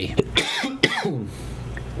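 A man gives a short laugh and coughs a couple of times into his hand.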